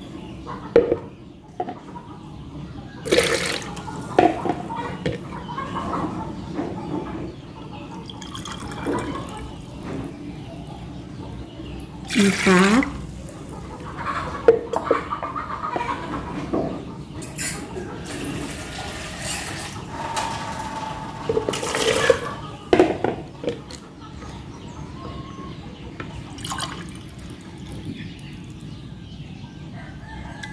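Coconut milk being poured, a glassful at a time, into an aluminium pot. Liquid splashing and trickling is broken up by occasional sharp knocks of the glass and utensils against the pot.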